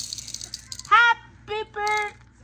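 A brief rattling shake fades out, then three short, high-pitched voice calls come in quick succession.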